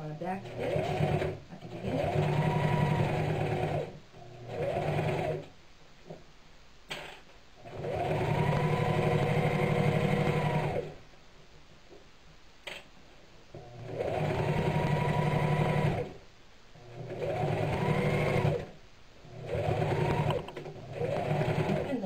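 Electric Singer domestic sewing machine stitching through folded burlap in about eight short runs of one to three seconds, stopping between them. Its motor hum rises in pitch as each run starts and falls as it stops.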